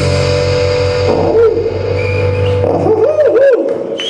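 The final chord of a live blues-rock song: an electric guitar chord rings out under a long held harmonica note, then the harmonica plays a few short bending, wavering notes as the low chord dies away near the end.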